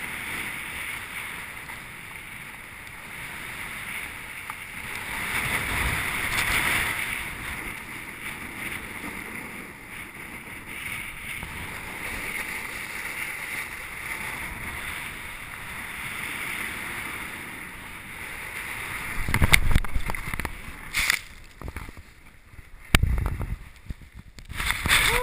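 Snowboard sliding and carving over groomed snow, a steady rushing hiss mixed with wind buffeting the camera's microphone, swelling about six seconds in. In the last five seconds, three heavy thumps with scraping as the rider catches an edge and falls.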